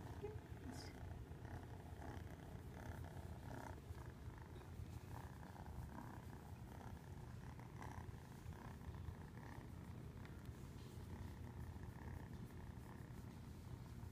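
Domestic cat purring steadily throughout.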